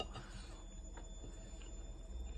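A wooden spoon clicking and scraping against a ceramic plate as curry and rice are scooped up, with one sharp click at the start and a couple of fainter ones about a second in, over quiet chewing.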